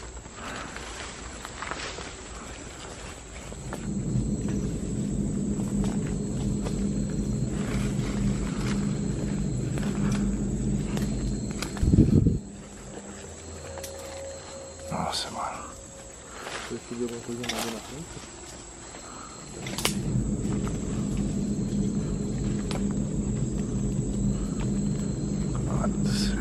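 A low, ominous droning growl swells in twice, with a sudden loud hit about twelve seconds in. Between the two drones there are quieter scattered crackles.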